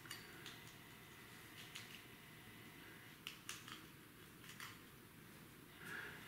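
Near silence with a handful of faint, scattered clicks and taps from fingers picking seeds out of a halved hot pepper pod.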